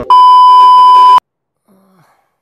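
Television test-pattern tone: a loud, steady 1 kHz beep that lasts about a second and cuts off suddenly.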